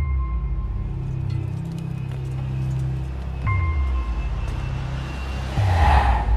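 Dark film-trailer score: deep low drones with bass booms that fall in pitch, one about halfway through and one near the end. Each boom sets off a high ringing tone, and a noisy whoosh swells up near the end.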